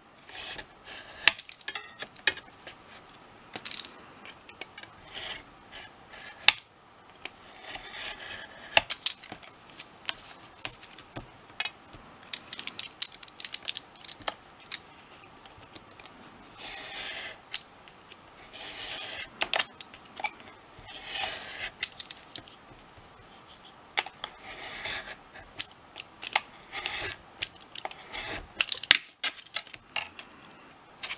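Craft knife cutting black card along a steel ruler: repeated short, scratchy strokes of the blade drawn through the card, with many sharp clicks and taps in between.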